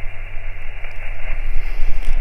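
Ham radio transceiver on receive just after a CQ call: a steady, narrow hiss of band noise from its speaker, with no station heard answering. A low rumble runs underneath.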